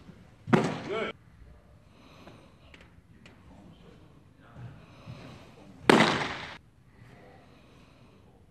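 Two loud pops of a thrown baseball smacking into a catcher's mitt, one about half a second in and the other about six seconds in, each dying away over a fraction of a second.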